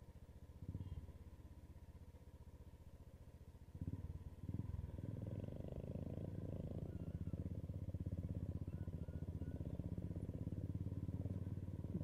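Royal Enfield Bullet's single-cylinder engine running under way, with a steady, even beat of firing pulses. It gets louder about four seconds in and stays steady.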